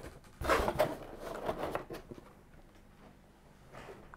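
Product packaging being handled during an unboxing: rustling with a few light knocks, starting about half a second in and lasting about a second and a half.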